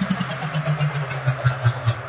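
Electronic dance music: a low synth bass line pulsing about five times a second, with quick hi-hat ticks on top, coming in just after a rising noise sweep.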